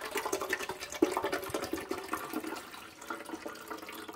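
Keurig descaling solution poured from its bottle into a clear plastic coffee-maker water reservoir, splashing steadily, with a louder splash about a second in and the splashing easing off toward the end.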